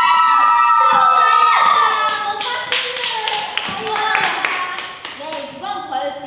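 A group of young women shriek together in one loud, held, high-pitched cry as a rock-paper-scissors round is decided. It breaks into a few seconds of hand clapping and excited voices.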